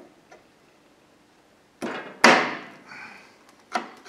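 A pointed tool punching holes through the rim of a metal paint can: three sharp snaps, two close together about two seconds in, the second the loudest with a short ringing tail, and a third near the end.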